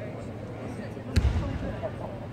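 A single sharp thump about a second in, ringing briefly in a large sports hall, over a steady murmur of voices.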